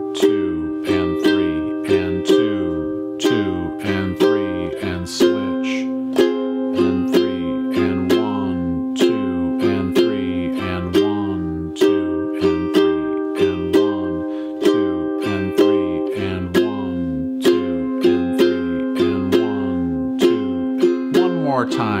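Ukulele strummed slowly in 3/4 time with a down, down, up, down, up pattern, heavy on the first strum, going back and forth between C minor and F minor chords. The chord changes about every five and a half seconds, twice through the pattern per chord.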